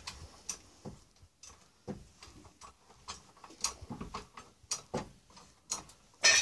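Faint, irregular clicks and knocks, roughly one or two a second, from a hydraulic car jack being pumped to lift.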